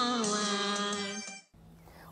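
The last sung note of a children's song, held over backing music and fading out about a second and a half in.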